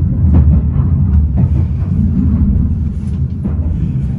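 Steady low rumble of a train running on its rails, heard from on board, with a few faint clicks.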